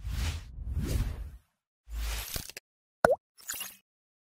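Sound effects of an animated logo reveal: two noisy swells, a low hit about two seconds in, then a sharp pop just after three seconds and a short high-pitched flourish.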